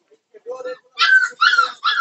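A pug puppy crying in short, high-pitched yelps as it is lifted out of its cage, four loud cries about half a second apart in the second half.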